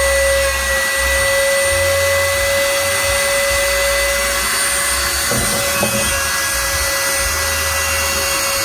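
Trim router used as the spindle of a 4-axis CNC router, running with a steady high-pitched whine while carving a wooden workpiece that turns on the rotary axis. A low rumble comes and goes as the cut changes.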